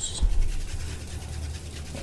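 Faint rubbing and handling noises of kitchen items being moved about, over a steady low hum.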